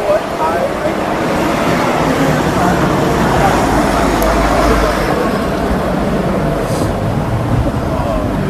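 Street traffic noise with a coach bus driving past close by: a low engine rumble and tyre noise that swell to their loudest about halfway through, then ease off.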